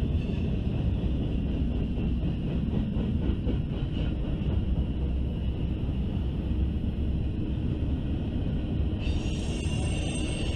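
Freight cars rolling past on the rails, covered hoppers then tank cars, with a steady low rumble of wheels on track. About nine seconds in, a higher-pitched sound joins the rumble.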